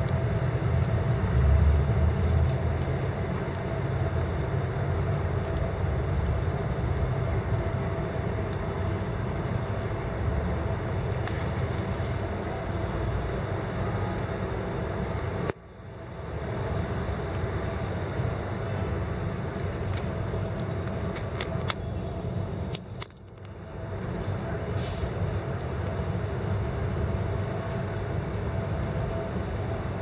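Steady downtown traffic rumble and city hum over a hushed crowd standing in a moment of silence. The sound drops out briefly twice.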